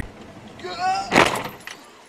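A voice crying out, then a single sudden loud burst about a second in, as an oncoming car comes right up to the front of the car.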